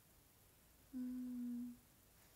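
A woman's closed-mouth hum: one steady 'mm' note about a second in, lasting under a second.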